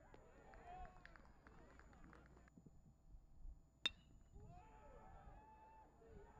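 Faint, distant voices from players on a baseball field, with a single sharp clink a little under four seconds in.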